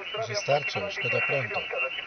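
A voice coming over an amateur radio transceiver's loudspeaker: another station talking during a contact, sounding thin and narrowed like radio audio, with a faint steady high whistle beneath it.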